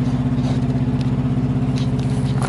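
Semi truck's diesel engine idling with a steady, even throb.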